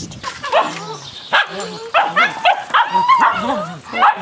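Cavalier King Charles spaniels barking repeatedly in short, excited calls.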